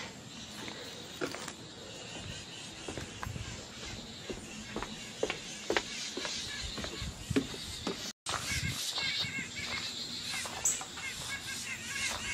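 Many songbirds scolding together in a tree, chickadees, wrens, a titmouse and blue jays among them, in many short chirping calls that come through more clearly after about eight seconds. Footsteps on a wooden deck and stairs sound in the first part.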